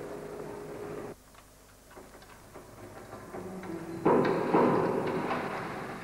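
Aircraft-factory assembly-shop noise: scattered metallic knocks and clanks. Louder machine noise breaks off about a second in, and a louder burst of clatter comes about four seconds in and slowly dies away.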